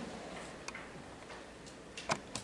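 A few faint, scattered clicks over quiet room hiss.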